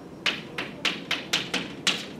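Chalk on a blackboard while numbers and brackets are written: about seven sharp taps and clicks of chalk striking the board in two seconds, irregularly spaced.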